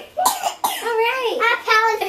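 A young girl's high-pitched voice making drawn-out wordless sounds that swoop up and down, with a short cough just after the start.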